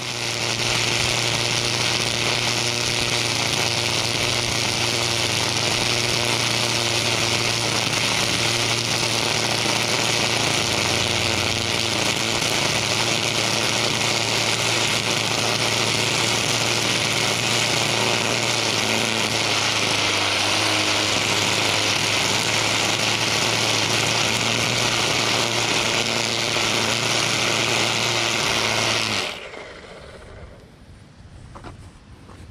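Battery-powered Husqvarna 325iLK string trimmer running steadily at full speed with .080 square trimmer line, edging grass along a concrete curb: a constant motor hum under the hiss of the spinning line cutting grass and striking the concrete edge. It stops suddenly near the end.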